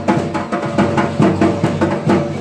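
Loud festival drumming with a steady, repeating beat over sustained music.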